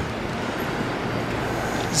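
Steady city street traffic noise: a continuous rumble and hiss of passing vehicles with a faint low hum.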